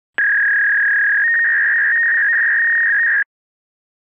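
A steady electronic beep tone lasting about three seconds. About a second in, a second, slightly higher tone joins it and wavers against it. It starts and cuts off abruptly.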